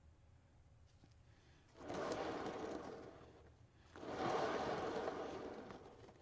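Hand-spun turntable under a paint-covered canvas, whirring in two spins of about a second and a half each, a moment apart, as it is turned to spread the poured paint outward.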